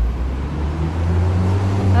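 Road traffic: a motor vehicle's low engine rumble passing close by, growing louder near the end.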